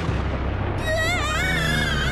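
Dark cartoon underscore: a low steady drone, joined about a second in by a high wavering whine.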